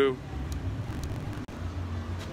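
Street background noise with a steady low rumble like traffic, broken by a brief dropout about one and a half seconds in.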